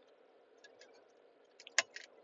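A quiet car cabin, then a few light, sharp clicks near the end, the clearest of them a little before the end.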